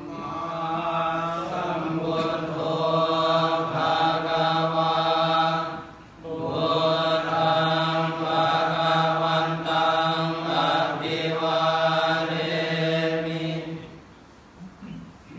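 A large group of Theravada Buddhist monks chanting in unison on a steady low reciting pitch, with one short pause for breath about six seconds in. The chant stops at the end as they bow.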